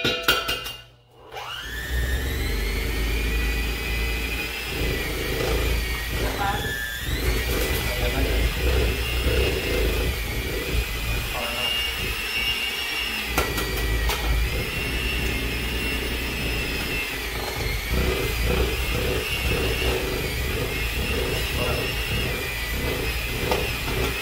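Electric hand mixer starting up about a second in and running steadily, beating softened cream cheese with eggs in a metal bowl. Its whine wavers and dips briefly as the load on the beaters changes.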